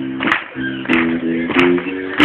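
A live rock band playing an instrumental passage: guitar chords changing every half second or so, with a sharp hit about every two-thirds of a second and no vocals.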